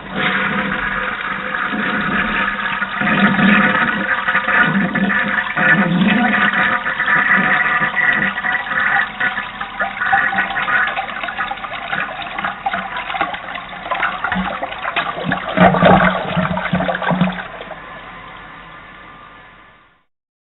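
A toilet flushing: a long rush and gurgle of water with an extra surge about sixteen seconds in, then fading away.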